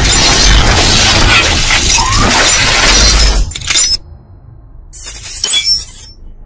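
Loud cinematic intro sound effect: a dense rush of noise over a deep rumble that cuts off suddenly about four seconds in, followed by a shorter bright, glassy sparkle near the end.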